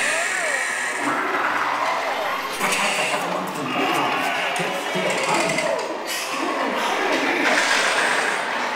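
Dark-ride soundtrack: voices and music from the attraction's speakers, over a steady hiss.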